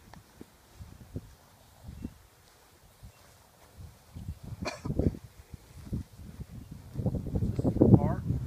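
Footsteps on grass and wind on the microphone: scattered low thumps and rumble that grow louder near the end, with one sharp knock almost five seconds in.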